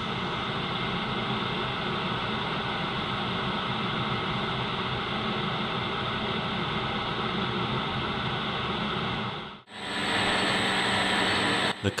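Steady workshop background noise while the tool is fitted. About ten seconds in it cuts off abruptly and gives way to a Warco 280V metal lathe running, a steady noise with a faint high whine.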